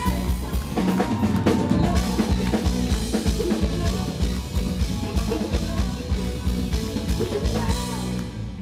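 Live band playing an instrumental groove with the drum kit prominent, alongside bass, guitar and keyboards, heard from the audience.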